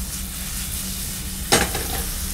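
Garlic, strips of pepper and ham sizzling steadily in oil in a steel frying pan over a gas burner, the ham cooking until its fat turns translucent. A single sharp knock about one and a half seconds in.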